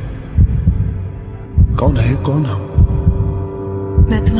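Film-trailer sound design: deep, evenly spaced thumps like a heartbeat, about one every second and a quarter, over a low hum, with a brief voice near the middle.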